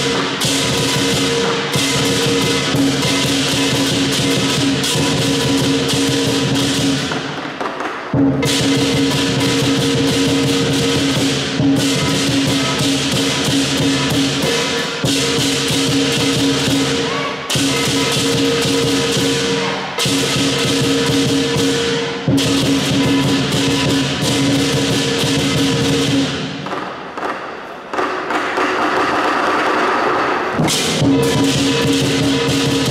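Chinese lion dance percussion: a large lion drum beaten together with clashing cymbals in a dense, driving rhythm. The playing breaks off briefly about eight seconds in and again near the end.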